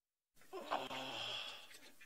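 Dead silence, then a live feed's sound cuts in about a third of a second in: a short, low, sigh-like voiced sound over faint steady background noise.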